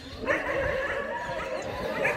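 A dog whining in one long, slightly wavering cry that starts just after the beginning.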